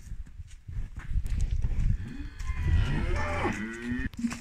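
A cow mooing: one long, low moo that bends in pitch in the second half.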